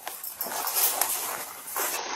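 Rustling and handling noise on a body camera's microphone: a dense scratchy hiss as clothing or a hand moves against it.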